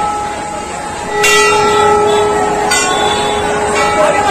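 Brass temple bell struck several times. The first loud strike comes about a second in, and each strike rings on at a few clear pitches under the next.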